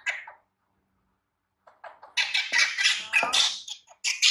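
Baby macaque crying out: one short cry at the start, then after a pause a run of high-pitched squeals lasting about two seconds. It is fussing as a T-shirt is pulled over its head, which it does not want to wear.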